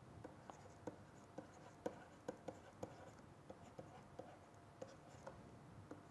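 Faint, irregular light ticks of a stylus on a pen tablet as numbers are handwritten, about fifteen small taps over quiet room hiss.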